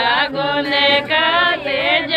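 A woman singing a Rajasthani (Shekhawati) jalwa pujan folk song, a wavering melody in short phrases.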